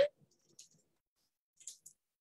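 The last syllable of a spoken word cuts off at the very start, then it is nearly quiet except for two faint, short clicks close together near the end.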